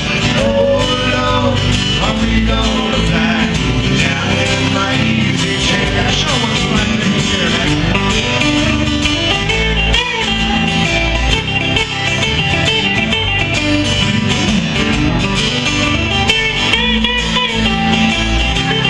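Small live band playing country rock: an acoustic guitar strumming over an electric bass, with an electric guitar playing lines that bend up in pitch around the middle and again near the end.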